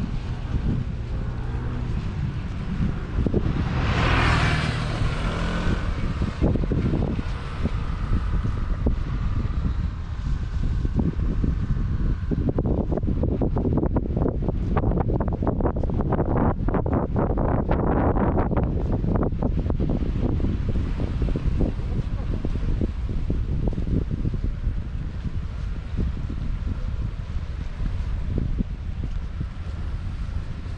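Wind buffeting a GoPro's microphone in a steady low rumble, with sea surf along the shore.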